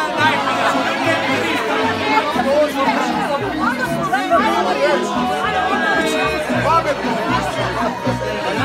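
A crowd of guests talking over one another, with music playing underneath and a low bass line repeating.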